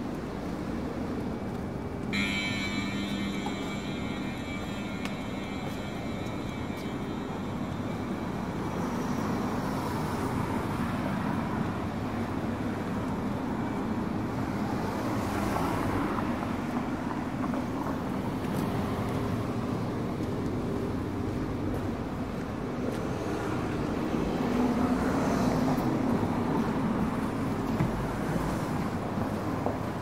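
City street traffic running past: a steady wash of car noise, with vehicles swelling and fading as they pass several times.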